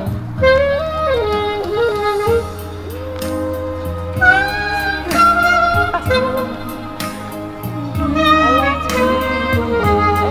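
Saxophone playing a slow, smooth melody over a backing track with a steady beat and bass: romantic dance music.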